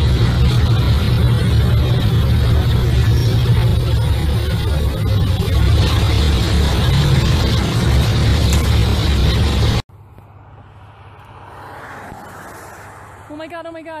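Loud, rough street noise with a heavy low rumble that cuts off suddenly about ten seconds in. It gives way to quieter road noise that swells as a vehicle passes on a highway, and a man starts exclaiming near the end.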